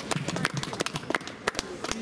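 Sparse applause from a small group: separate hand claps at an uneven pace.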